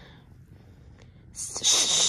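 A short, loud breathy hiss, about half a second long, starting about a second and a half in; before it there is only quiet room tone.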